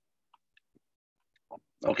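Near silence with a few faint clicks, then a voice saying "okay" near the end.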